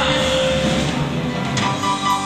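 Live band playing a slow electric blues instrumental passage on electric guitars, bass guitar, drums and keyboards, with no singing. A held note gives way to new notes about one and a half seconds in.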